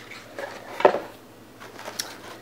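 Handling of a cardboard box and its contents: soft rustling, with one sharp knock just under a second in and a small click near the end.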